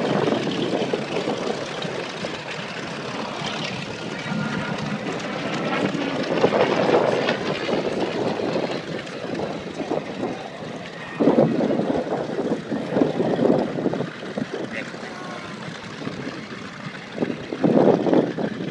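Republic P-47 Thunderbolt's Pratt & Whitney R-2800 radial engine running at low power as the fighter taxis, its level swelling and dipping, with wind buffeting the microphone.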